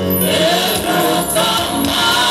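A group of voices singing a gospel worship song together.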